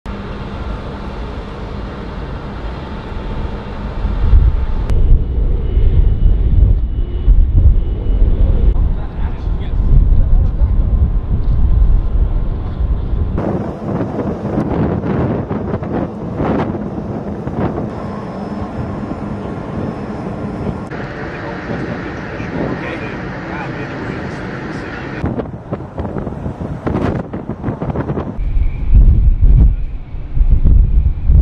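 Outdoor shipboard ambience, with wind buffeting the microphone in gusts of low rumble under a steady background hum and indistinct voices. The background changes abruptly every few seconds.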